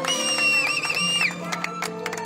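Festive music: a high melody note held for just over a second that wavers and then breaks off, over steady low tones and a fast run of short percussive hits.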